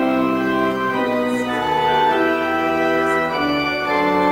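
Organ playing a hymn in held chords that change every second or so.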